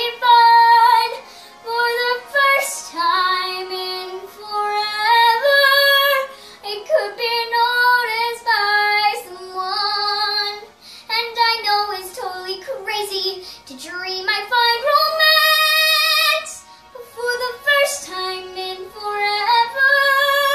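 A young girl singing a show tune solo, in phrases broken by short breaths, with one long held note about three quarters of the way through.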